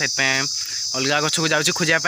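Steady high-pitched insect chorus running on under a man's talking.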